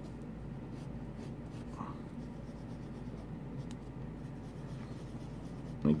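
Graphite pencil scratching on paper in short sketching strokes, over a low steady hum.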